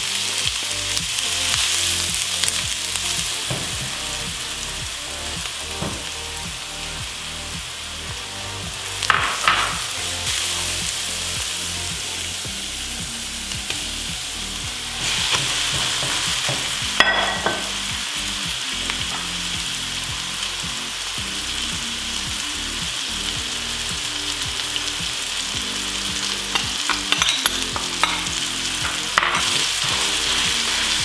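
Diced onion sizzling in hot olive oil in a nonstick pan while a silicone spatula stirs it, with a few short knocks of the spatula against the pan. About halfway through, the sizzle grows louder as raw ground beef goes into the pan.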